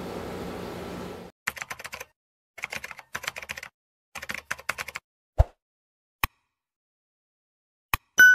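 Keyboard typing sound effect in three quick bursts of clicks, then a low thump and two single clicks. A steady room hum is heard before the first burst.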